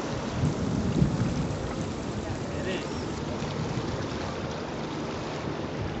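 Wind rumbling on the microphone over the steady wash of shallow sea water around rocks, with a stronger gust about a second in.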